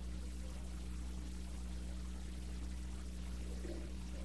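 Steady hiss with a low, even hum underneath: the background noise of an old sermon recording, heard in a pause between sentences.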